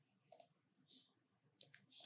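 Near silence with a few faint, short computer mouse clicks: a pair about a third of a second in and two more near the end.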